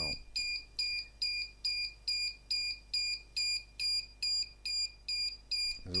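Arduino battery-capacity tester's small speaker beeping a high tone over and over, a little over two short beeps a second. It is the signal that both batteries have finished discharging.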